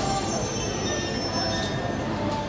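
Passenger train wheels squealing on the rails as the train moves slowly along a station platform: a thin high squeal that fades near the end, over a steady low rumble.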